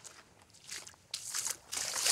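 Footsteps of a person walking on beach sand, a step every half second or so, growing louder about a second in.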